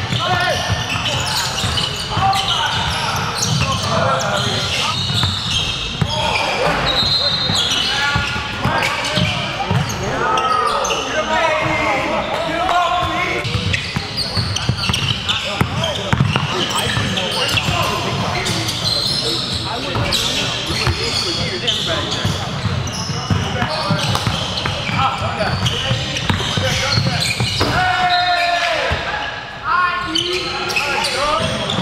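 A basketball game in a gym: the ball bouncing on the hardwood court, with indistinct voices of players and spectators throughout.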